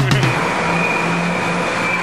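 Steady vehicle noise: a car engine running close by, under a constant hiss with a steady high-pitched whine.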